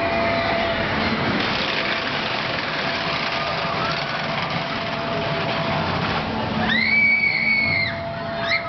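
Swinging-gondola amusement ride in motion: a steady noise with a faint steady hum. Near the end a rider gives one high scream, about a second long, that rises, holds and falls away.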